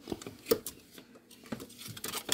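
A few light clicks and knocks of plastic food containers and pouches being handled on a refrigerator shelf, the sharpest about half a second in.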